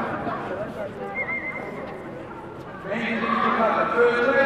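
A man's voice over a public-address microphone in a large hall, dropping away about a second in and picking up again near the end.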